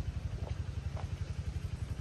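Excavator's diesel engine running with a steady, rapid low throb.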